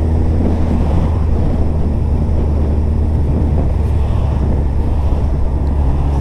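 Suzuki Hayabusa's inline-four engine running steadily under way, with a loud, steady rumble of wind on the microphone.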